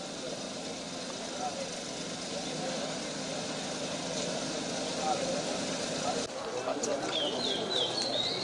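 Outdoor background sound: a steady hum of the kind street traffic makes, with faint, indistinct voices. After a cut about six seconds in, birds chirp.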